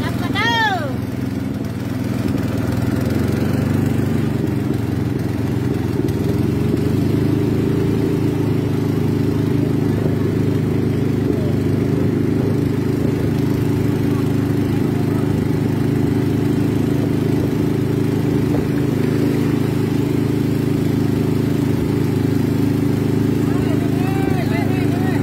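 Small boat engine running steadily at an even pitch, heard from on board while moving through floodwater. A short call from a voice about half a second in and again at the very end.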